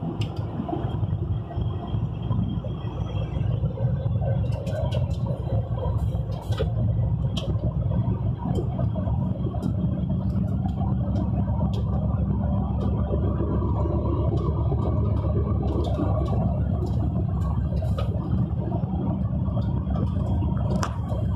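Steady low rumble of a vehicle's engine and tyres on the road, heard from inside the cab while driving at speed, with occasional light clicks and rattles.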